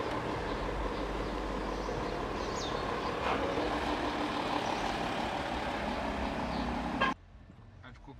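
A Porsche Cayenne SUV's engine running with steady road and vehicle noise while being driven; the sound cuts off abruptly about seven seconds in.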